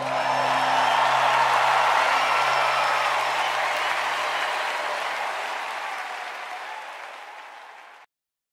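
Live crowd applauding and cheering at the end of a worship song, slowly fading out, with a low held note from the band underneath that dies away. The sound cuts off abruptly at the very end.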